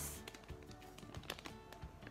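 Faint background music, with a few light clicks and taps as fingers handle a squishy's clear plastic bag and card packaging.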